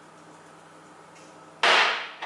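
Quiet room tone, then about one and a half seconds in a single short, loud clatter of kitchen things handled at the counter by a bowl of pizza sauce, as a seasoning bottle is put down and a spoon is taken up.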